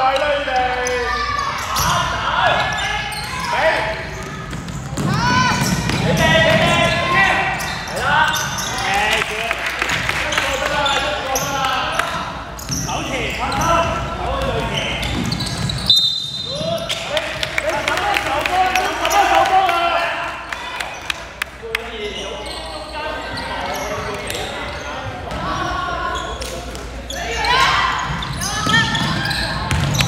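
Voices shouting and calling in a large, echoing gym, with a basketball bouncing on the hardwood court. About sixteen seconds in there is a sudden loud knock with a brief high tone.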